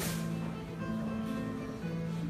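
Martin acoustic guitar strummed together with a Kentucky mandolin in an instrumental passage, with a strong strum right at the start and held notes ringing on.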